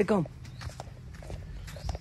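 Light footsteps on dry, dusty ground: a few irregular soft taps and scuffs, with a low steady hum underneath and a dull thump near the end.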